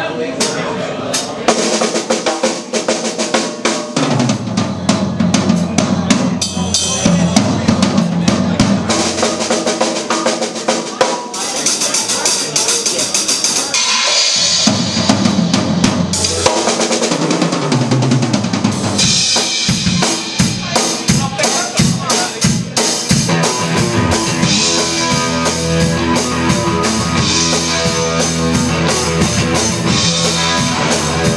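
A drum kit played live in a steady rock beat, with bass drum, snare and cymbals striking throughout. Pitched instruments from the band come in behind the drums after about four seconds and fill out more strongly in the second half.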